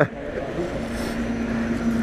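A motor running with a low rumble, joined about a second in by a steady hum that holds at one pitch.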